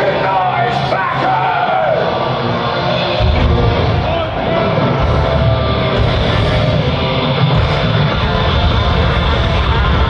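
Live rock band playing through a festival PA, recorded from within the crowd. A singer's voice is heard over the band for the first couple of seconds, then the instruments carry on.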